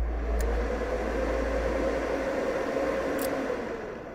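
Star Sound power amplifier's cooling fans whooshing at full speed on power-up, a steady rush of air with a faint held hum. Near the end the rush eases off as the amplifier finishes starting up and its fans drop back to low speed.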